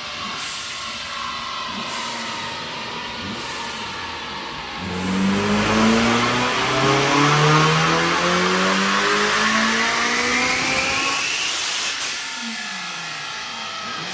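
Supercharged Honda Civic FN2 Type R four-cylinder (K20) engine on a rolling-road dyno. It runs at light load, then about five seconds in goes to full throttle, and the engine note climbs steadily through the revs with the supercharger's whine rising alongside it. About twelve seconds in the throttle is lifted and the revs fall away.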